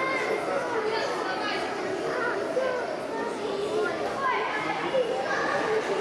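Indistinct chatter of many voices at once, children's voices among them.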